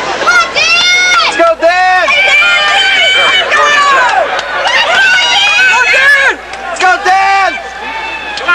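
A spectator close by yelling and cheering on a runner in a race: several long, high-pitched shouts, loud against the quieter stadium background.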